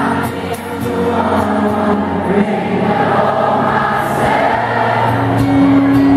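Acoustic guitar strummed under singing, with many voices singing along together like a crowd choir.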